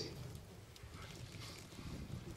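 Faint, scattered soft knocks and shuffling as one actor grips and manipulates another bent over a low stage bench, over a low steady hum.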